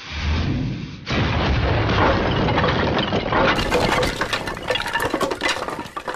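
Bundled hand grenades going off as a demolition bomb: a sudden loud blast about a second in, followed by a few seconds of crackling, clattering debris and breaking glass.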